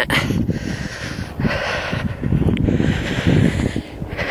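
Wind buffeting the microphone in uneven gusts, a low rumble, with a steadier hiss of wind joining about a second in.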